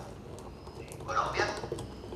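Speech: a man's voice over a video call, a short pause with a few faint clicks, then a brief phrase a little over a second in.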